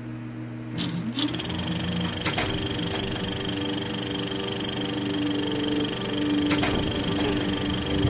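Edited soundtrack of a steady low hum and held tones with a high whine, broken by a few sharp clicks; the held tones change pitch about halfway through.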